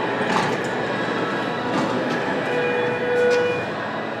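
Elevator doors sliding open with a steady rolling rumble, with a short steady whine about two and a half seconds in and a few light clicks.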